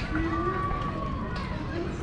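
Distant, indistinct voices over a steady low outdoor rumble, with one drawn-out vocal tone lasting about a second and a half.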